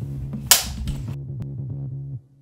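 A film clapperboard snapping shut once, sharp and loud, about half a second in, over electronic background music with a steady beat.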